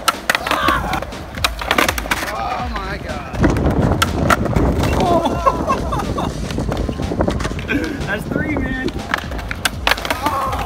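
Skateboard wheels rolling on concrete, with sharp pops and clacks from the tail and deck as ollies up a concrete ledge are tried. There is a steady low rumble from the wheels from about three and a half seconds in.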